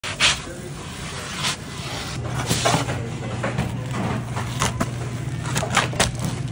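Kitchen handling noises at a pizza oven: a series of short knocks and scrapes, some sharp, over a steady low hum that starts about two seconds in.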